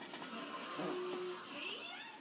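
Small dog giving a brief whine as it rubs its itchy nose on the bedding: one short held note, then a rising one.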